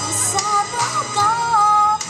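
A woman singing a melody into a handheld microphone over accompanying music, ending on a long held note.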